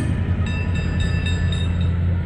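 Steady low engine drone of a Christmas trolley bus running at idle, with a faint high chiming repeating about four times a second.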